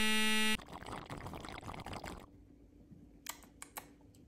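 A wrong-answer buzzer sound effect sounds for about half a second. It is followed by soda being sipped and slurped through a straw for about a second and a half, then a few faint clicks.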